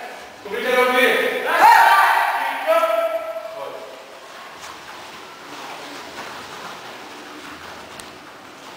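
A loud voice calls out for about three seconds, in a reverberant large hall, then only faint hall noise remains.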